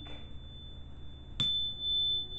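A high-pitched tuning fork rings with a single steady tone. It is struck again with a sharp tap about one and a half seconds in, and the ringing swells louder after the tap.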